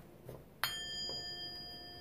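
A single struck metal chime or bell ringing: a clear, bright tone that sounds suddenly about half a second in and rings on, slowly fading.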